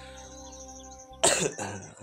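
A man coughs once, a short, sharp burst about a second in, over a steady low hum and a fast, pulsing high-pitched insect chirr.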